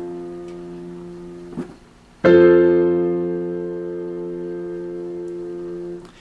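Piano keyboard: a left-hand low F and octave F ring and fade. About two seconds in, the full F major chord is struck, F, A and C in the right hand over the left-hand octave Fs, and it is held, fading slowly until it is released near the end.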